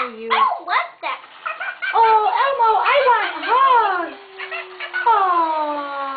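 A person's voice imitating a dog for a hand puppet: several short rising-and-falling yelps, then a long falling howl that starts about five seconds in.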